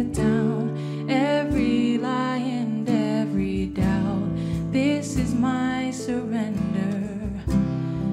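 Live worship band playing a slow song: women singing over keyboard chords and strummed acoustic guitar, with cajon strikes coming in about halfway through.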